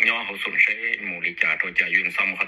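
Speech only: a man talking without a break.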